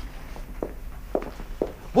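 Footsteps of a person walking across a studio floor, about five steps.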